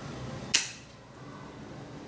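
Cable cutters snipping through a steel bicycle brake inner cable: one sharp snap about half a second in, with a short fading tail.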